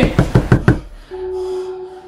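A rapid run of about six sharp knocks lasting under a second, followed by a steady held tone, a scare sound effect.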